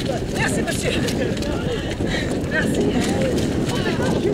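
Runners' footsteps squelching and splashing through a muddy, water-filled ditch, with voices of runners and onlookers around them.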